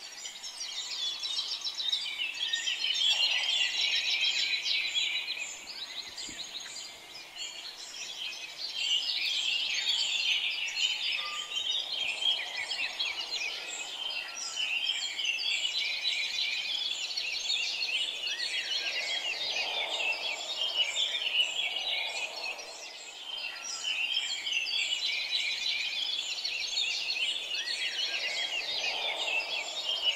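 A dense chorus of many birds chirping together, a steady mass of quick high chirps that swells and eases every few seconds.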